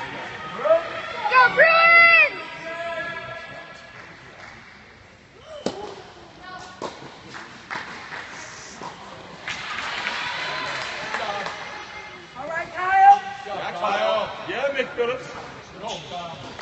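Spectators shouting encouragement at a tennis match, with a few sharp knocks of a tennis ball being struck in the middle. More shouts come near the end.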